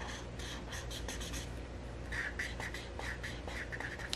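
Felt-tip marker scratching on paper as it colours in, in quick short strokes that come faster in the second half.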